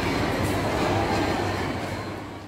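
Moving escalator running with a steady low rumble, under shopping-mall crowd hubbub and faint background music; the sound fades away near the end.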